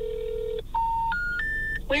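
Telephone call on a phone's speaker: a steady tone cuts off about half a second in, then three short tones step up in pitch. They are the special information tone that comes before a recording saying the number has been disconnected.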